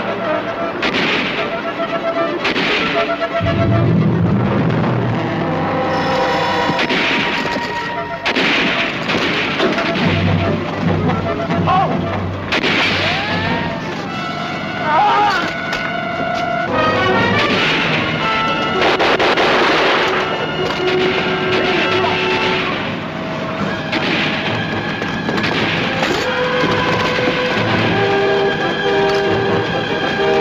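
Battle sound effects of repeated explosions and gunfire, every few seconds, over a background music score.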